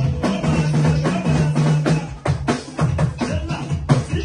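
Live band music: a held bass note carries the first two seconds, then quick drum strikes, about four or five a second, take over.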